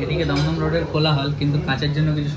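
Cutlery and dishes clinking in a restaurant dining room, under a low voice talking.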